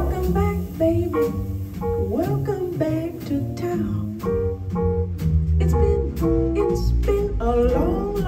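Live jazz group starting a blues: grand piano, upright double bass and drum kit, with a woman singing in sliding, wavering phrases over them.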